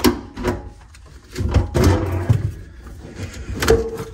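A garbage disposal being twisted off its sink mounting ring with a screwdriver levering a ring tab. A few knocks and clicks come first, then a stretch of scraping and rattling about a second and a half in, and a sharp knock near the end as the unit comes free of the sink flange.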